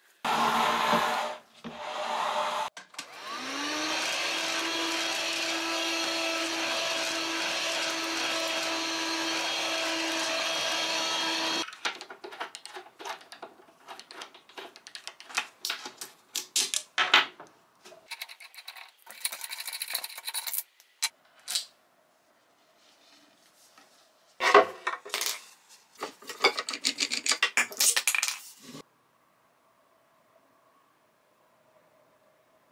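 Clicks, knocks and rattles of a white shelf unit being taken apart, with its boards and screws handled and a screwdriver at work. About three seconds in, a steady mechanical hum starts, rising in pitch as it starts and then holding. It cuts off suddenly after about eight seconds.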